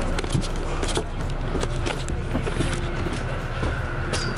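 A bus engine running, heard from inside a double-decker bus, a steady low rumble with frequent light clicks and knocks on top of it.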